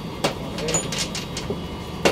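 Metal parts of a disassembled jet chisel (pneumatic needle scaler) knocking and clicking against the workbench as they are set down and picked up: one sharp knock about a quarter second in, a few lighter clicks around the middle, and a louder knock at the very end.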